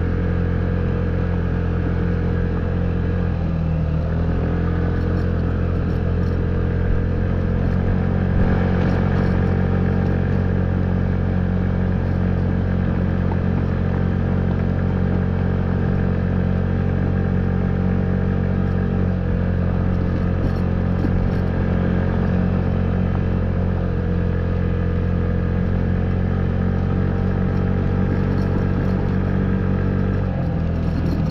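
Honda Ruckus scooter's small single-cylinder four-stroke engine running at a steady cruising speed under way, its pitch dipping slightly a few seconds in and again past halfway.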